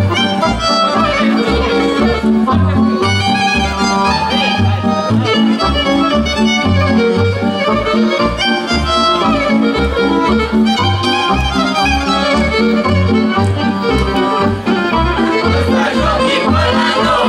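Lively traditional Romanian folk dance music: a fiddle leads over accordion, with a steady pulsing bass beat.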